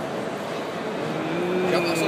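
Steady hall background noise, then from about a second in a man's voice holding one long, slightly falling note.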